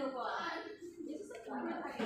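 Speech: indistinct talking, which the recogniser could not make out.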